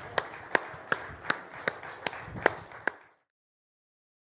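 Hand claps from the audience, a steady run of about three claps a second over faint crowd noise, cutting off suddenly about three seconds in.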